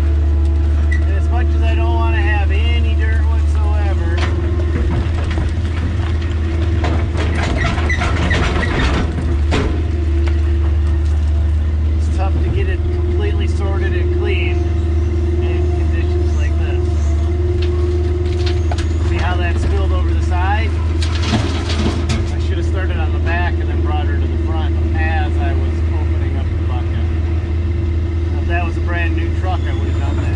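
Kobelco excavator's diesel engine running steadily under load with a constant hydraulic pump whine, heard from inside the cab. Loose rock and dirt clatter in two bursts as the bucket scoops and dumps into a dump truck bed.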